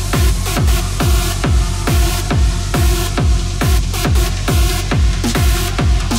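Trance music with a steady four-on-the-floor kick drum, about two beats a second, under sustained synth chords.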